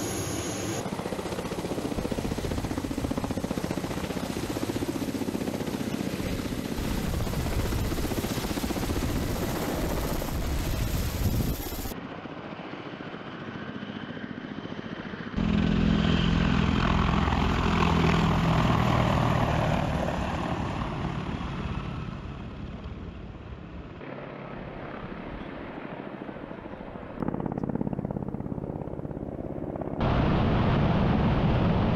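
Military attack helicopters' rotors and turbine engines running, heard across several abrupt cuts: first a Ka-52's coaxial rotors turning on the ground, then a low-flying Mi-28N, loudest for a few seconds past the middle. The sound jumps in level and tone at each edit.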